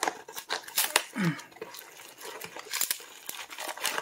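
A stubborn cardboard mailing box and its plastic packing tape being pulled and torn open by hand: irregular crackling, crinkling and tearing with many short snaps.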